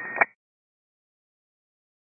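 The last syllable of a tower controller's narrow-band VHF radio transmission, cut off with a click a fraction of a second in, then dead silence.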